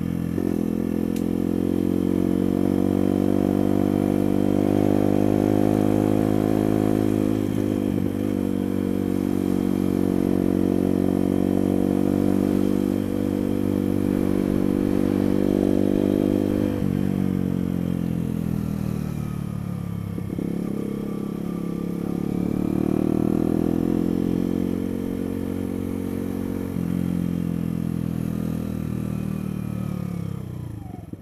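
Sinnis Blade trail motorcycle's engine running as the bike is ridden along, heard from the rider's helmet. Its note holds steady for the first half, drops about halfway through, dips and climbs again, then falls away near the end as the bike slows.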